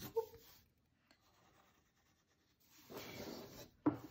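A Sharpie marker drawing on paper: a faint stroke at the start, then a quiet pause, then a longer stroke of about a second near the end, followed by a single short tap.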